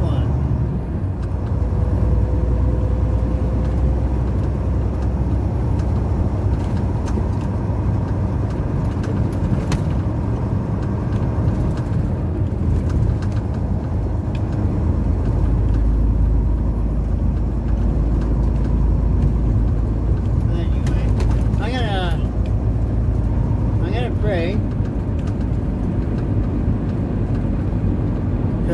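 Semi truck's engine and road noise heard inside the cab while driving, a steady low rumble.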